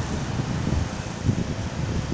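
Wind buffeting the microphone, an uneven gusty rumble over a steady outdoor hiss.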